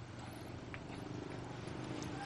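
Faint rustles and a few light clicks of split bamboo strips handled during hand-weaving of bamboo baskets, over a steady low background hum.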